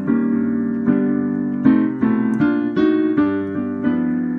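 Solo piano playing the closing chords of a jazz ballad: about eight chords, each struck and left to ring, coming closer together in the middle.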